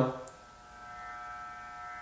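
Electric hair clippers starting up about half a second in, then running with a steady buzz.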